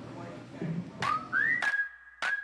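A whistled note, about a second long, that rises in pitch and then holds steady, with a few clicks, after a second of low room noise.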